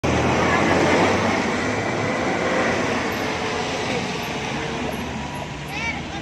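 Steady noise of road traffic on a wet road, with voices in the background.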